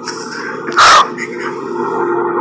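A woman's single choked sob, a short sharp outburst of breath just under a second in.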